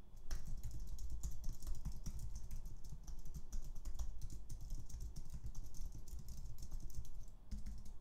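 Fast typing on a computer keyboard, a dense run of key clicks that stops briefly shortly before the end.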